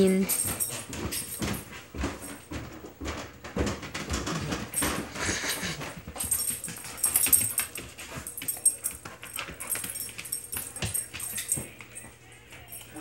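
A young dog playing energetically with a toy: a steady run of quick clicks and bumps from its paws and the toy on the floor, with its collar tags jingling and an occasional whimper.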